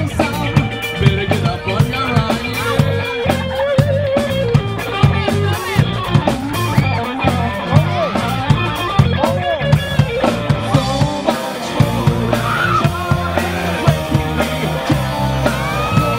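Live rock trio playing an instrumental passage: an electric guitar plays a line with bent notes over electric bass and a drum kit keeping a steady beat. The bass drops out briefly a little past the middle.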